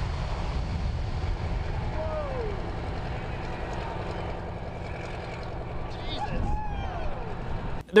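Jet engines of a C-17 military transport at high power during takeoff, heard as a steady low rumble with wind on the microphone. A couple of bystanders' exclamations drop in pitch about two seconds in and again near the end.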